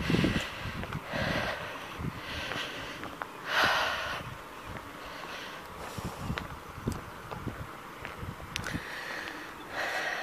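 Close-up breathing of a person walking, soft puffs of breath about once a second, the strongest about three and a half seconds in, with faint low thumps underneath.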